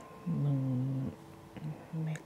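A man's low, closed-mouth 'mmm' hum, held for nearly a second, then two short 'mm' sounds.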